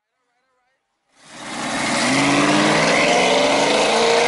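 Car engine running and revving up, its pitch climbing slowly, fading in from silence about a second in.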